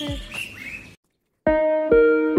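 Small birds chirping as a spoken word ends, then a brief dead silence. About one and a half seconds in, background music starts with plucked, ringing notes struck in a steady rhythm.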